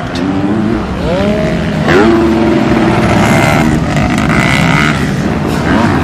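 Racing motorcycle engines at high revs. The revs climb sharply twice in the first two seconds, then hold high and fairly steady.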